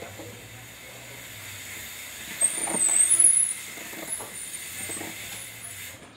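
A passing motor vehicle: a steady hiss and rumble that swells to its loudest about halfway through, with a brief wavering high squeal at the peak. Faint short snips are heard under it.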